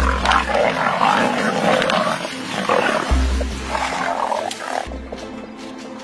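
Lions growling in rough bursts over a warthog they have pinned down, with background music and deep bass hits underneath. The growling stops abruptly about five seconds in, leaving only the music.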